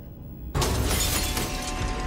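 Sudden loud crash of shattering glass about half a second in, running on as a dense clatter of breaking.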